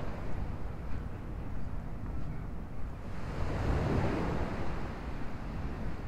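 Beach ambience of wind rumbling on the microphone over a steady wash of surf. A broad rush of noise swells and fades in the middle.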